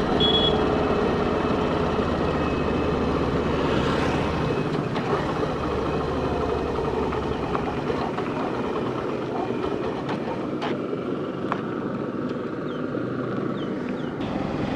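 Hero Glamour 125cc single-cylinder motorcycle being ridden, engine running under steady wind and road noise heard from the rider's seat. The low engine sound drops away from about four seconds in, and a few light clicks come near the end.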